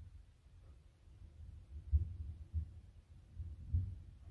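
Distant thunder: a faint, low rumble that swells several times, most strongly about halfway through and again near the end.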